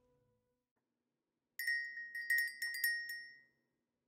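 Metal wind chimes tinkling: a quick cluster of several bright, high ringing strikes that starts about a second and a half in after a silence and rings away shortly before the end.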